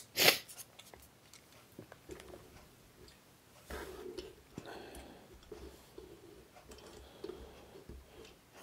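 Small clicks and taps of 1/64 scale die-cast model trucks and a gooseneck trailer handled by hand and fitted together. One sharper click comes just after the start, and a faint rustling scrape runs through the middle.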